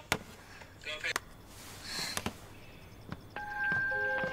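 A few sharp clicks, then a little after three seconds in a bright chime of several held tones sets in.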